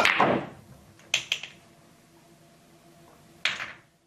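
Pool break shot: a sharp clack as the cue ball is struck and drives into the racked object balls. Then two quick clicks about a second in as the balls knock together, and another knock near the end.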